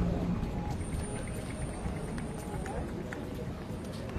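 City street ambience at night: a steady hubbub of indistinct passers-by's voices and street noise.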